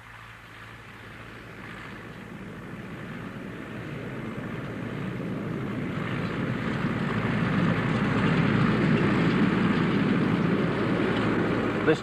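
Farm tractor's diesel engine running steadily as it pulls a seed drill across a field, growing louder throughout as it comes closer.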